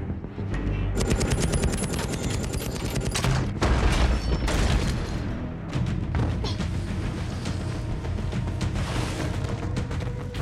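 Action-film sound mix: a burst of rapid gunfire about a second in, then a heavy boom, the loudest moment, with a music score running underneath.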